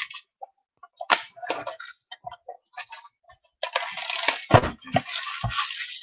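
Plastic shrink-wrap being peeled off a sealed trading-card hobby box: scattered crinkles and ticks at first, then dense crinkling from about three and a half seconds in. Two dull knocks come in the second half.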